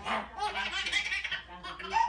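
A baby laughing in several short bursts.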